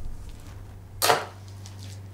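A single short, sharp sound about a second in, fading within a fraction of a second, over a faint steady low hum.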